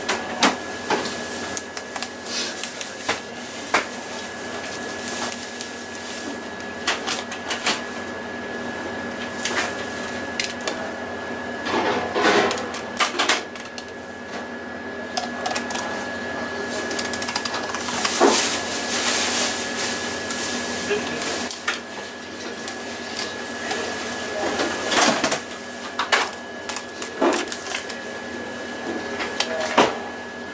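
Scattered clicks, taps and scrapes of a chef's knife against a plastic cutting board and the fish's bones while a skipjack tuna is filleted, over a steady high-pitched hum.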